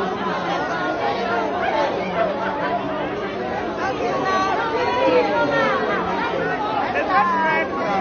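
Many people talking and calling out over one another in a packed fast-food restaurant: a crowd's chatter with no single voice standing out.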